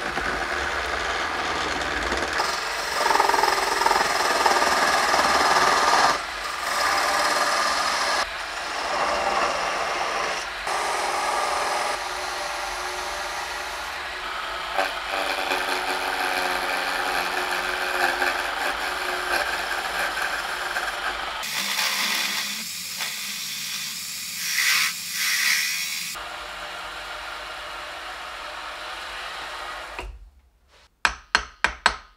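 Small wood lathe spinning a wooden spindle while a turning chisel cuts it, a steady scraping hiss of wood being cut away. The sound changes abruptly every few seconds as the cut changes, with a thinner, brighter stretch about two-thirds of the way through.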